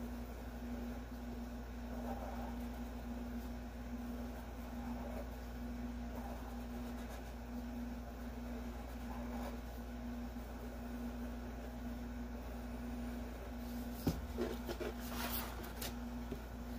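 Black permanent marker drawing strokes on paper, faint under a steady background hum; about two seconds before the end a single knock and a brief rustle as the paper is moved.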